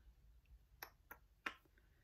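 Near silence broken by three faint, sharp clicks in the second half, small hard objects knocking together.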